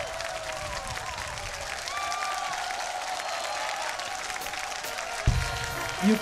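A large audience applauding, with scattered cheers and calls, as a song finishes. A single low thump comes near the end.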